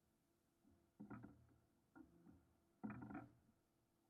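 Near silence, broken by three faint, brief sounds about one, two and three seconds in.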